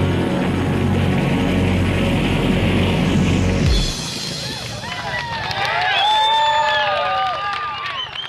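Steady, loud engine drone, mixed with music, that drops away abruptly about four seconds in. A crowd then cheers and shouts.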